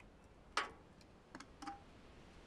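Glassware being handled on a table: one sharp click about half a second in, then two lighter taps, the last with a brief ring.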